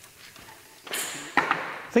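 A bundle of insulated electrical wires swishing and rustling as it is pulled through a wooden frame, with a short sharp swish about a second in after a quiet start.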